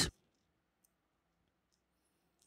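The last of a spoken word, then near silence with one faint click a little under a second in.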